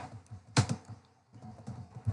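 Typing on a computer keyboard: a run of irregular key clicks, one louder stroke about half a second in, then a short pause and a few more keystrokes.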